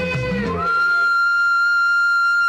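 Film song music: a singer's held note ends about half a second in, then a flute slides up into one long, steady high note that holds to the end.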